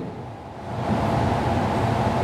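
Steady room noise of a large hall: a low hum under an even hiss, a little quieter for the first half second.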